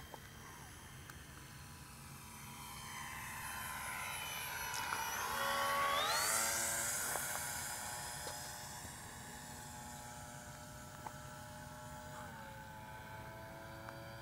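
Stevens AeroModel X-480 RC model airplane's motor and propeller in flight as it passes by. The sound grows louder to a peak about six seconds in, then fades, its pitch dropping as it goes past.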